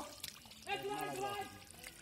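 A man's voice calls out briefly about halfway through, over faint splashing and dribbling of shallow muddy water.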